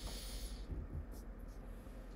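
Low room noise with a short hiss at the start, like a breath through the nose close to the microphone, and a few faint ticks after it.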